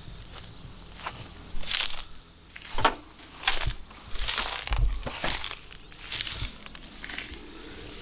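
Footsteps crunching through tall dry grass and weeds, a step roughly every second.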